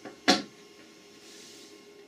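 One short, sharp click-like sound about a third of a second in, then faint room hiss.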